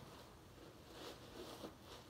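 Faint rustling of packing stuffing being pulled out of a new shoe, barely above room tone.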